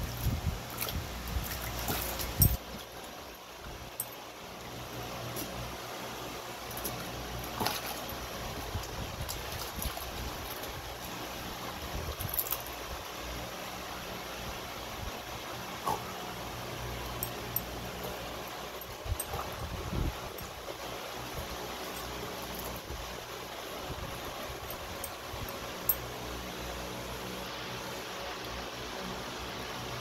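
A dog splashing and pawing in a shallow plastic tub of water, with a few sharper splashes and knocks scattered through, over the steady whir of an electric fan.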